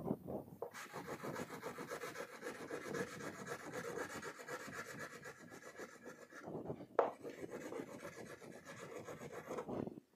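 Yellow wax crayon rubbing on a paper sheet against a whiteboard in rapid, steady strokes, with brief pauses and one sharp tap about seven seconds in.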